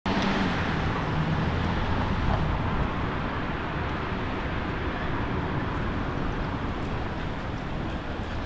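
Steady city street ambience: a continuous traffic rumble and hiss with no distinct events.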